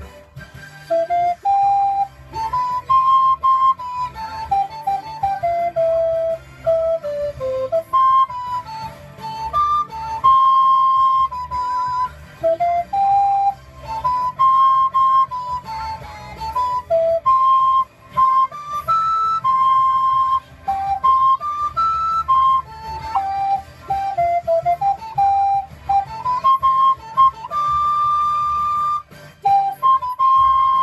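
Alto recorder playing a lively pop melody: short separated notes stepping up and down in phrases with brief pauses between them, and a long held high note near the end.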